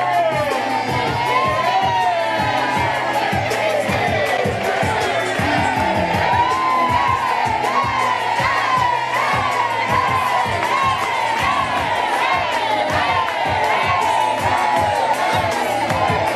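A crowd cheering and shouting in many overlapping high voices, with music playing underneath and hands clapping.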